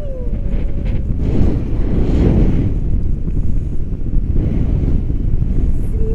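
Wind rushing over the microphone of a selfie-stick action camera on a tandem paraglider just lifting off, a loud, steady low rumble that swells twice.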